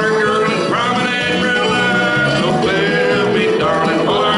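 Country square-dance singing-call music: a recorded backing track with a man and a woman singing together over it in held, sustained notes.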